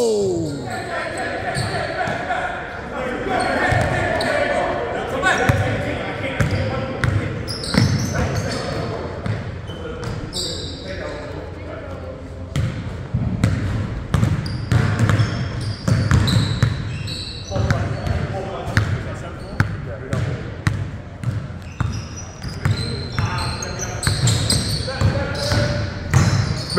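Basketballs being dribbled on a hardwood gym floor: repeated thumps ringing in a large hall, mixed with players' voices.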